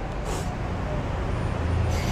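Steady low rumble and hiss of a car heard from inside its cabin, the low hum growing a little louder near the end.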